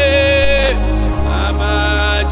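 A man singing a gospel worship song, holding a long note near the start and then starting another line, over steady low bass accompaniment.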